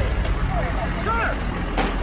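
Low steady rumble, as of heavy vehicles, under a man's voice starting to speak about half a second in, with a sharp knock near the end.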